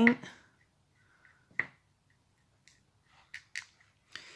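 A few small clicks and taps as a metal bathroom-sink chain and a paintbrush are worked in a plastic paint palette to coat the chain in paint. One sharper click about a second and a half in is the loudest; three fainter ones follow near the end.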